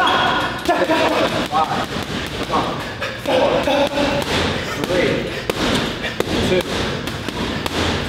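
Boxing gloves striking a hanging heavy bag in quick combinations, a string of dull thuds at an uneven pace.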